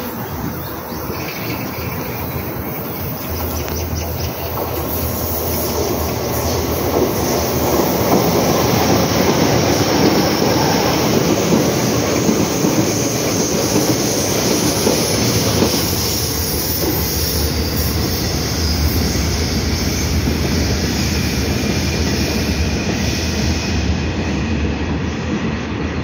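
Korail ITX-Saemaeul electric multiple unit passing through the station without stopping: wheel-on-rail noise builds from about six seconds in, stays loud for most of the pass, and eases near the end.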